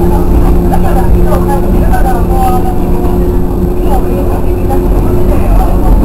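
JR West 103 series electric train running along the line, heard from the cab: a steady motor hum holding two even tones over a constant low rumble of the running gear.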